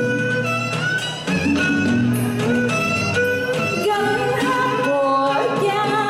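Live Vietnamese cải lương music: a woman singing held, wavering notes that glide between pitches, over string accompaniment.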